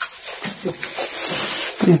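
Plastic bags crinkling and rustling as a hand handles them, an irregular crackling that runs on without a break.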